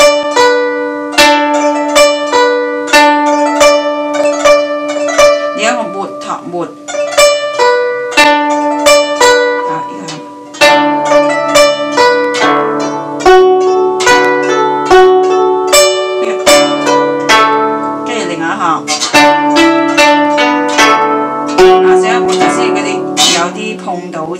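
Guzheng played with finger picks: a plucked melody with regular two-note pinched chords underneath, each note ringing on. It grows louder about ten seconds in.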